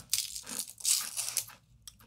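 Crisp fortune cookie crunching: several short, dry cracks and crunches in the first second and a half as the cookie is broken and bitten.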